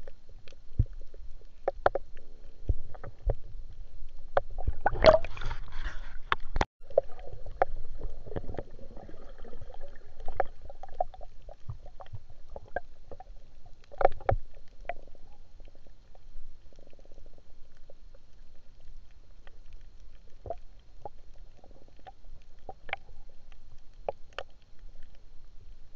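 Underwater sound picked up by a spearfisher's camera: scattered sharp clicks and crackles over a low rumble, with a short, louder rush of noise about five seconds in.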